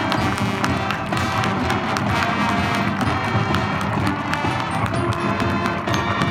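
Marching band playing live, brass and woodwinds sounding together over regular drum strokes.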